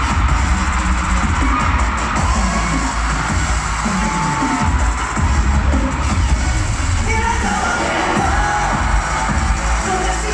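Live K-pop pop music played loud through an arena sound system, with heavy, steady bass and the audience cheering over it; a voice sings over the track toward the end.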